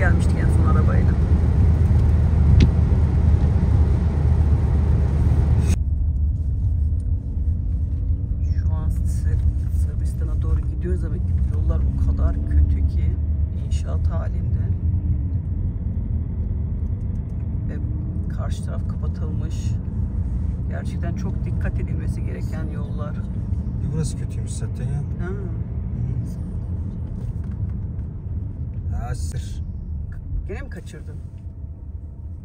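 Road noise inside a moving car: a steady low rumble of engine and tyres. For the first six seconds a louder hiss of tyres on a wet road sits over it, then cuts off abruptly, and the rumble goes on quieter.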